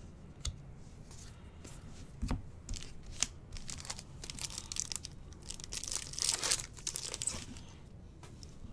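Foil wrapper of a trading-card pack being torn open and crinkled, the crackle building from about halfway through and loudest near the end. A few knocks come before it, the strongest about two seconds in.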